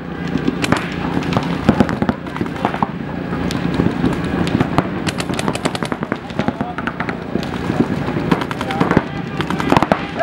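Paintball markers firing in rapid strings of sharp pops, several shots a second, with a shout near the end.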